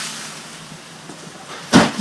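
Garden hose spraying at full flow, a steady hiss that fades off. Near the end comes a single sudden loud burst of noise.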